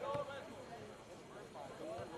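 Several people's voices overlapping, talking and calling out, with no words clear.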